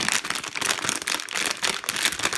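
Silver anti-static bag crinkling as it is handled: a dense, continuous run of crackly rustles.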